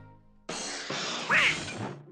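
Cartoon crash sound effect: a sudden noisy clatter about half a second in, lasting over a second, as the folding bed snaps shut on Donald Duck. Donald Duck squawks in the middle of it, the loudest moment.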